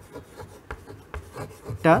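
Chalk scraping on a chalkboard in a quick run of short strokes as a word is written out letter by letter.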